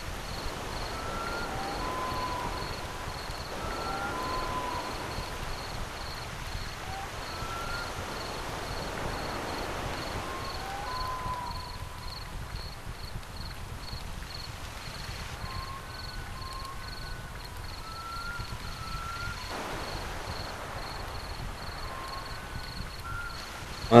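A cricket chirping steadily, a high evenly repeated chirp about two to three times a second. Now and then there are short whistled bird notes that slide up or down.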